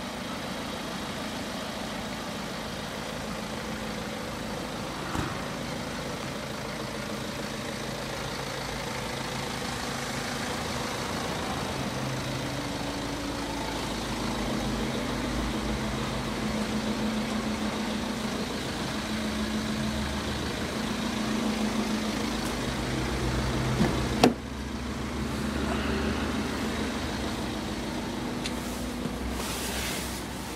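A BMW X5's two-litre twin-turbo engine idling steadily. Late on, a car door shuts with a single sharp thud, and the idle then sounds a little quieter, as heard from inside the cabin.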